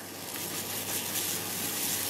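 Waffle batter sizzling on the hot plate of a preheated mini waffle maker, a soft steady hiss.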